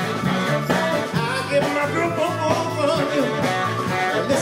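A live soul band playing: drum kit, electric bass and electric guitar with saxophone, loud and steady throughout.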